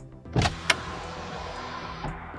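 A car's electric power window motor winding the driver's window down: a quick rising start, a click, then a steady running sound.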